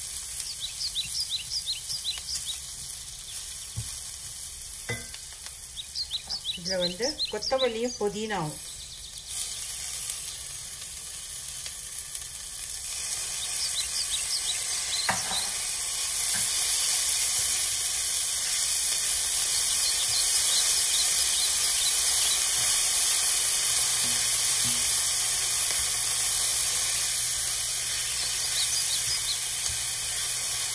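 Sliced onions and whole spices frying in oil in a stainless steel pan, sizzling steadily while being stirred with a silicone spatula; the sizzle grows louder about halfway through. A brief squeaking sound comes about seven seconds in.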